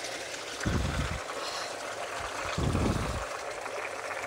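Steady trickle of running water in a garden, with two brief low rumbles about a second in and around three seconds.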